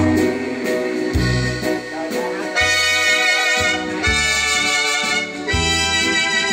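Yamaha electronic keyboard playing the instrumental ending of a Vietnamese song after the singing has stopped. It plays sustained chords over a bass note struck about every second and a half, and a fuller, brighter brass-like voice comes in about halfway.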